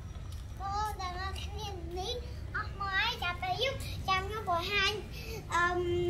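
A child's voice singing out wavering, sliding notes in short phrases, ending in one long held note near the end.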